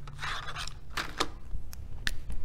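A cardboard box of markers handled and set down on a tabletop: a brief scraping rustle, then a few light knocks.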